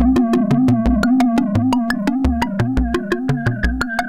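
Eurorack modular synthesizer patch running through the Make Noise FXDf fixed filter bank and Echophon delay in a feedback loop: a rapid stream of sharp clicks, about eight a second, over irregular low bass thumps, with the loop's ringing tones holding steady pitches underneath.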